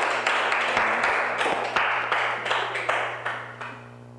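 Audience applauding, a dense clatter of many hands clapping that dies away near the end.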